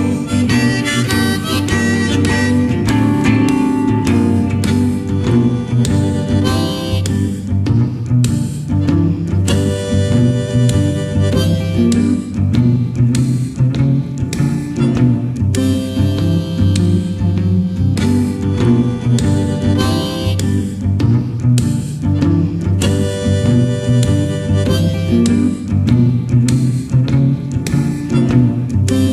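Instrumental blues break: a harmonica solo over a steady electric guitar rhythm with a regular beat.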